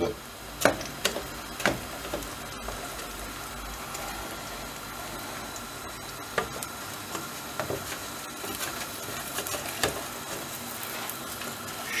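Steady hiss of a tray of dry-yufka börek cooking over a gas burner at full flame, with a few light knocks and scrapes as the metal tray is turned on the stove grate and a wooden spatula touches it.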